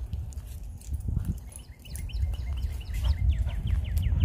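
A bird calling in quick runs of short, high, falling notes, several a second, starting about a second and a half in, over a steady low rumble.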